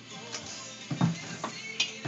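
A few short knocks and clinks of things being handled on pantry shelves, the loudest about a second in, over background music.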